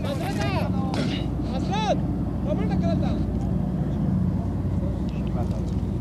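A steady low motor hum, with voices calling out faintly over it several times.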